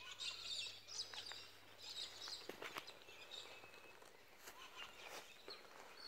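Faint, scattered bird chirps and calls, with a few soft clicks.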